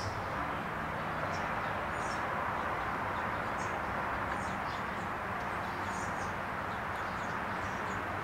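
Steady outdoor background noise with short bird chirps scattered throughout.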